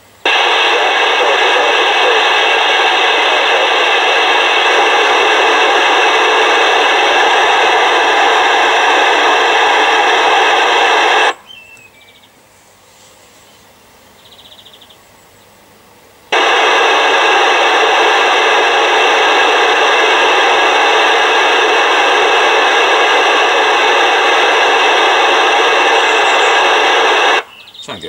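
A UK FM CB radio receiver giving out loud, steady hissing static in two stretches of about eleven seconds, with a quiet gap of about five seconds between them. It is the sound of a distant mobile station transmitting at the edge of range, its signal too weak to be read through the noise.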